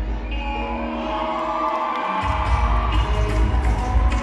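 Hip-hop dance track with heavy bass played loud over a hall's sound system; the bass drops out for a moment and comes back in hard about two seconds in. An audience cheers along.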